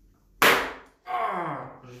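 A single sharp, loud smack as a bonesetter's fist strikes his hand pressed on a man's lower back, a blow to set the spine. About half a second later the man lets out a groan that falls in pitch.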